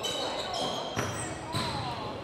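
Basketball game sounds on a hardwood gym floor: the ball bounces twice, once at the start and again about a second later, among high sneaker squeaks.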